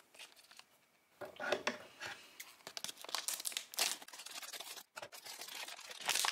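Crinkly plastic blind-bag packaging being handled and squeezed in the hand: a run of short crackles that starts about a second in and grows busier.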